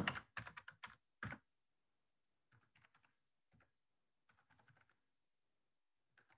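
Keystrokes on a computer keyboard: a quick run of louder clicks in the first second and a half, then a few faint, scattered keystrokes, with near silence between.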